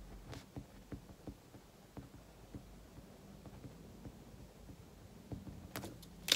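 Faint pen writing on paper: light scratches and small taps of the pen tip, with a few sharper clicks near the end.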